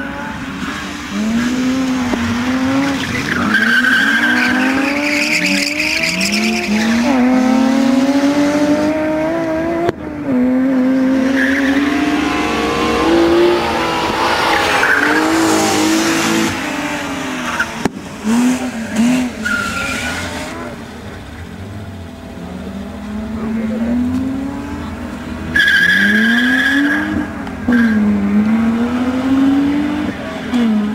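BMW E36 M3 rally car's straight-six engine revving hard, its pitch climbing and dropping again and again through gear changes. Its tyres squeal in several short spells.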